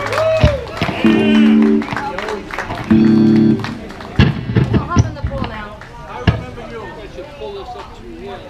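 Live rock band ending a song: a last sung note, then two loud held chords from the guitars and bass about two seconds apart. After them come a few scattered drum hits under crowd voices as the music stops.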